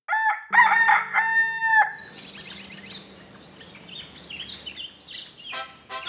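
A rooster crowing once, a long cock-a-doodle-doo lasting about two seconds. It is followed by quieter small birds chirping over a soft hiss.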